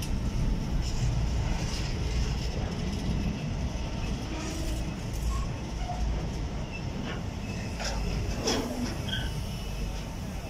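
Container wagons of a freight train rolling past close by: a steady low rumble of steel wheels on the rails, with several sharp knocks from the wheels and wagons.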